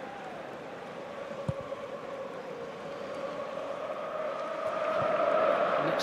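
Football stadium crowd noise, with supporters singing a sustained chant that swells louder near the end. A single dull thud about one and a half seconds in.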